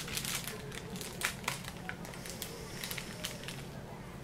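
Kitchen knife cutting through a firm slab of fudge and pressing down onto the paper beneath, making scattered short crackling clicks as the blade and paper crinkle.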